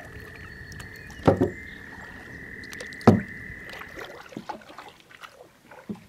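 A frog's long, steady, high trill carries on until about four seconds in, over soft water noise. Two knocks of the canoe's paddle against the hull, about a second and three seconds in, are the loudest sounds.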